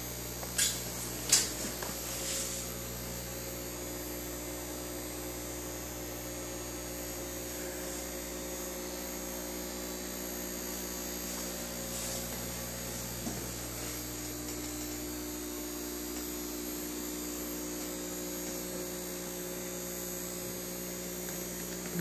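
Aquarium equipment running with a steady electrical hum, with two short clicks about a second in.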